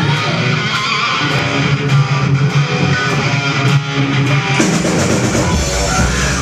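Live rock band playing, electric guitars to the fore. About four and a half seconds in, the sound gets fuller and heavier, with much more bass.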